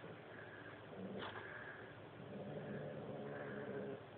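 Domestic cat making a low, drawn-out call, starting about a second and a half in.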